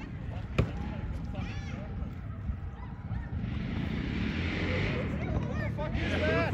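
Faint, distant voices over a steady low rumble, with a sharp click about half a second in and a hiss that rises in the second half.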